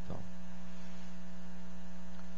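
Steady electrical mains hum in the conference sound system, several steady tones held at an even level, left exposed in a pause in the talk.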